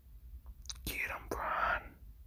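A person's breathy, whispered vocal sounds: two in quick succession about a second in, the second longer and louder, after a couple of faint clicks.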